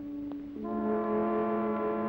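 Background music: a low, sustained note that drops to a lower, fuller held note about half a second in.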